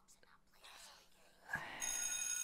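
A soft sigh, then about a second and a half in an electric school bell starts ringing, a steady high-pitched ring that is the loudest sound here.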